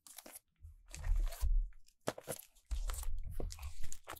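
Plastic shrink wrap crackling and tearing in irregular bursts as it is peeled off a boxed music album, with low bumps from the album being handled.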